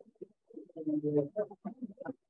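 A few people clapping unevenly after the winners are announced, with a short held vocal cheer from someone in the audience about a second in.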